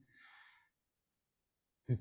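A man's short, faint breath in during a pause in his talk, followed by dead silence until his speech starts again near the end.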